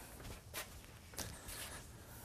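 A few faint footsteps on a hard floor in a quiet room, with soft ticks about half a second and a second in.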